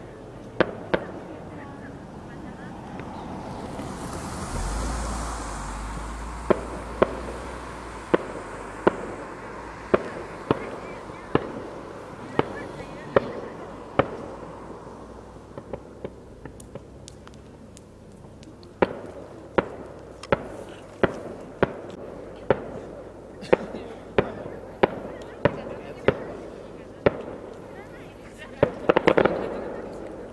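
Distant fireworks shells bursting: a string of sharp bangs about one a second, a lull of a few seconds in the middle, then a quick flurry of bangs near the end.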